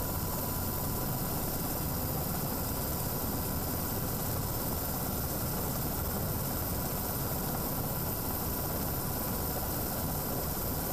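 A steady, even noise, strongest in the low range, with a faint steady tone above it and no distinct events.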